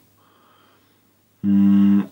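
Faint room sound for about a second and a half, then a man's voice holding one steady drawn-out vowel or hum for about half a second: a thinking filler while he recalls a word.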